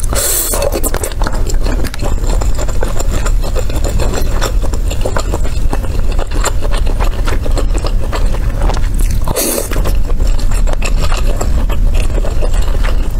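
Close-miked chewing of skewered fish cake, with many small wet clicks and squishes from the mouth. There are two louder bursts, one at the start as a piece is bitten off the skewer and one about nine and a half seconds in, over a steady low hum.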